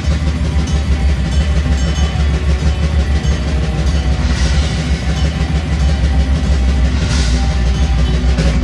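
Black metal band playing live: heavily distorted electric guitars and bass guitar in a dense, steady wall of sound. Cymbal wash swells about four seconds in and again near the end.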